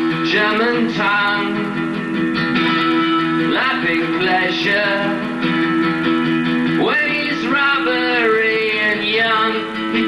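Acoustic guitar played live, held chords ringing with notes that slide up in pitch, twice.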